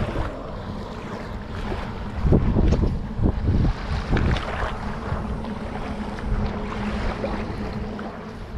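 Wind buffeting the microphone over small waves lapping at a sandy shoreline, with the heaviest rumbling gusts in the middle.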